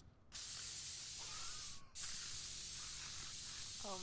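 Disinfectant being sprayed: long, steady hissing bursts with two short breaks, one about a third of a second in and one just before the two-second mark.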